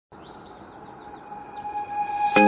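Quick series of high, bird-like chirps, each falling in pitch, over a soft steady tone, growing louder.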